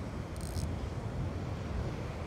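Steady low wind rumble on the microphone over the wash of surf, with a brief high hiss about half a second in.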